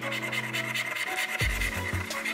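A coin scraping the coating off a scratch-off lottery ticket on a tabletop, in quick repeated strokes, over background music.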